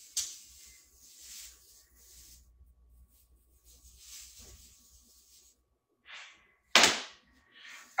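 Quiet rummaging and handling noises from searching through artificial Christmas tree parts, with a short, sharp noise near the end.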